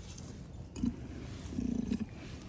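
Holstein cow giving two low grunts: a short one a little under a second in, and a longer one near the end.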